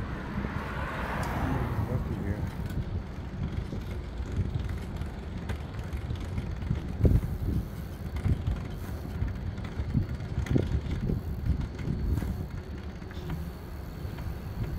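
Wind rumbling on the microphone of a moving bicycle, with scattered knocks and rattles from the bike as it rolls over the road.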